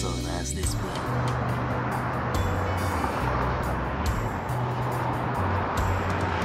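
Background music with a low bass line changing notes every second or so, over a steady noisy haze. A brief spoken phrase comes in the first half second.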